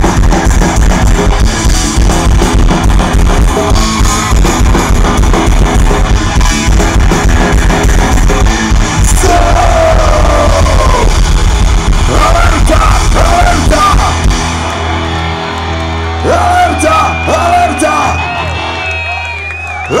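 Punk rock band playing live through a festival PA, heard from within the crowd: loud distorted guitars, bass and drums with a singer yelling. About fourteen seconds in the drums stop, leaving a held low note and a steady high ringing tone under shouted voices.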